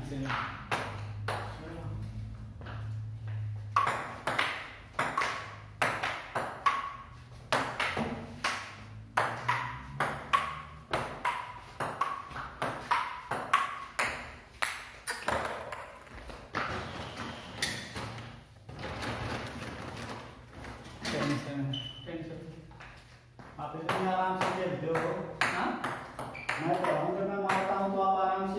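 A table tennis rally: the plastic ball clicks off the bats and the wooden table top about twice a second for roughly the first half, each hit ringing briefly in a bare room. The rally then stops, and voices talk near the end.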